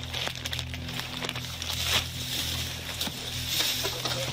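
Clothing and handling rustle on a police body-worn camera's microphone as the officer moves, with scattered light knocks over a steady low hum.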